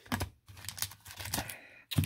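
Hard plastic one-touch card holders in resealable plastic sleeves clicking and clacking against each other as one is set down among them, a series of light taps with the sharpest near the end.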